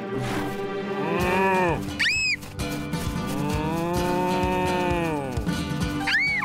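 A cartoon chicken mooing like a cow: two moos, the second one longer, with a brief high call between them. Children's background music runs underneath.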